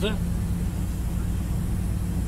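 Steady low drone of a lorry's diesel engine and tyres at motorway cruising speed, heard inside the cab, with a constant low hum.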